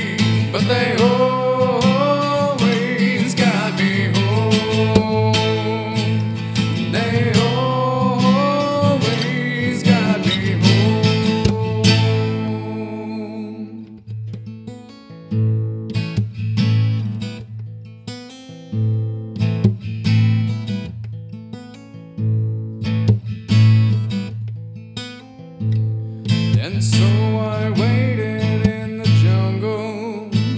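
Solo acoustic guitar played fingerstyle with percussive slaps on the body. For the first twelve seconds a gliding melody runs over a full texture. It then thins to sparse plucked notes and slaps, and builds up again near the end.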